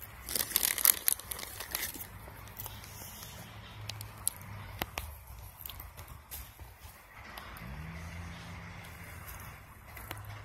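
A bag of peanuts rustled and crinkled by hand: a dense burst of sharp crackles over the first two seconds, then a few scattered clicks. A faint low steady hum sets in about three-quarters of the way through.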